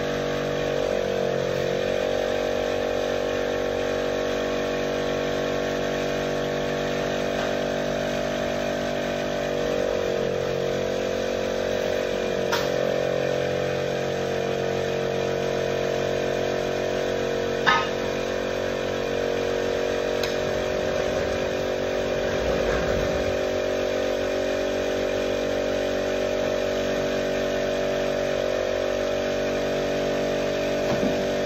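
Gravely JSV3000 side-by-side diesel engine running steadily, its pitch dipping briefly near the start and again about ten seconds in. A couple of sharp clicks come in the middle.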